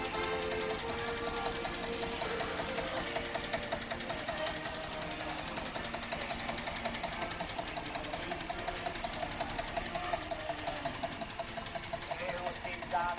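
Accordion music in the first few seconds, then an old farm tractor's engine running slowly at close range with a steady, regular knock as it tows a float at walking pace.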